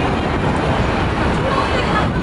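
Busy city street noise: a steady rumble of traffic with people talking nearby.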